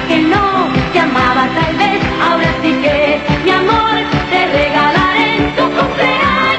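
Pop song: a woman singing over a full band with a steady drum beat.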